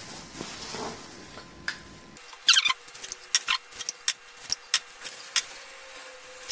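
Table knife scraping and tapping as chocolate spread is scooped and spread onto a halved loaf of bread: a series of short, irregular scrapes and clicks, the loudest a couple of seconds in.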